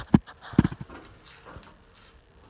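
A few sharp knocks as gear is handled and hung on the wall hooks of a horse trailer's tack room: one just after the start, then a quick cluster of two or three about half a second in.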